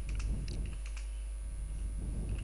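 Typing on a computer keyboard: a run of light, irregular key clicks over a steady low hum.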